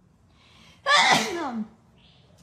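A person sneezes once: a short breathy intake, then a loud burst about a second in, its voiced part falling in pitch.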